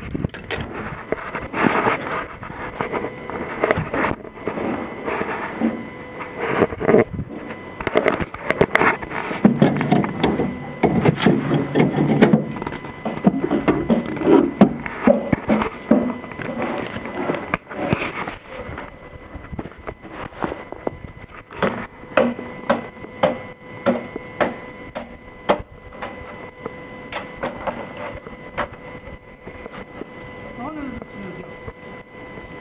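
Snow shovel scraping along and knocking against a paved road while snow is cleared, in irregular strokes that come thick and loud in the first half and sparser later.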